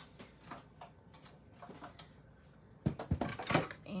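Light handling rustle of paper and cellophane, then a quick run of sharp plastic knocks about three seconds in as clear cutting plates are set onto the platform of a manual die-cutting machine.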